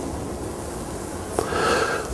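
Steady hiss of an open microphone, then a click and a short breath drawn in near the end.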